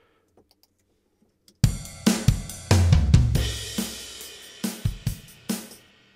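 Logic Pro X's SoCal sampled acoustic drum kit playing back through the Compressor. The drums come in about one and a half seconds in with a loud low hit and a cymbal wash that slowly dies away under a few more hits. The mix is set toward the uncompressed input, which sounds "so much softer".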